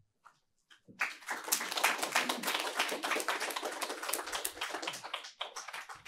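Audience applauding. It starts about a second in and thins to scattered claps near the end.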